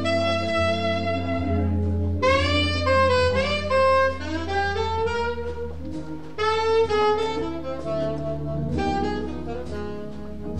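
Alto saxophone playing a jazz melody in phrases, a new phrase starting about two seconds in and another past six seconds, over sustained low organ notes and the band.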